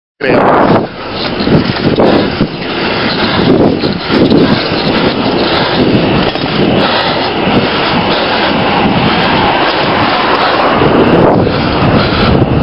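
Wind buffeting the microphone of a camera on a moving bicycle: a loud, steady rushing noise with uneven low gusts, starting abruptly, with a short laugh just after it starts.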